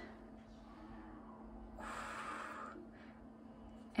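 A soft breathy snort lasting about a second, near the middle, over quiet room tone with a faint steady hum.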